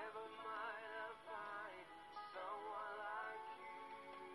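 Live singing with vibrato over instrumental accompaniment: three held, wavering notes in a row.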